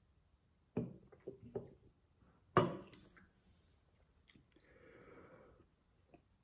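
A man drinking a carbonated drink from an aluminium can: a few short gulping and swallowing sounds about a second in, then a louder sharp sound about two and a half seconds in, and a faint breath out near the end.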